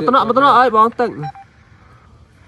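A person's voice speaking for about a second, then a faint steady hiss.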